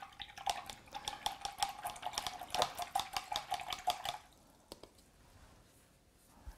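A paintbrush being rinsed in a plastic water jar: it clicks rapidly against the jar's sides over a faint steady tone, stopping about four seconds in.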